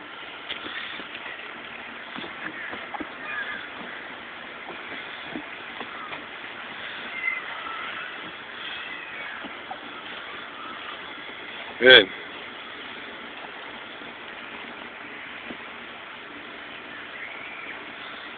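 Faint steady outdoor background with faint distant voices, and one short spoken "good" from a man about two-thirds of the way through.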